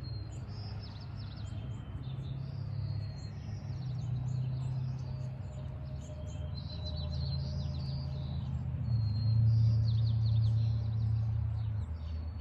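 Small birds chirping and twittering repeatedly over a steady low rumble, which swells louder for a couple of seconds near the end.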